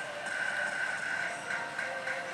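Pachislot machine electronic sound effects: a steady high tone, then a few short blips in the second half as the spinning reels are stopped.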